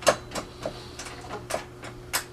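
Light irregular clicks and knocks, about seven in two seconds, from a slotted steel-angle frame and the freshly vacuum-formed high impact styrene sheet it holds being worked loose and lifted off the mold.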